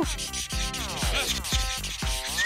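Marker pen rubbing across skin in scratchy strokes as a mustache is drawn on, over background music with a steady beat.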